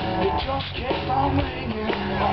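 Live band playing amplified through a stage PA: electric guitars, drums and keyboards, with a man singing lead.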